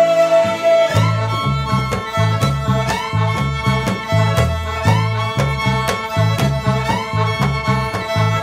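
Folk-rock band music: fiddle with sliding notes over guitar, with a bouncing bass line and a steady beat.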